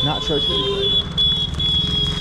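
A steady high-pitched tone, held for about two seconds with a short break about a second in, over the low rumble of street traffic.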